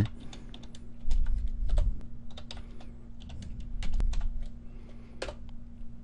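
Typing on a computer keyboard: a run of irregular keystroke clicks, with the Enter key pressed between short lines of text.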